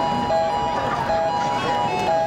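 Electronic chime tune over the stadium public-address system: a few clear, held notes stepping between pitches, the attention signal that comes before an announcement.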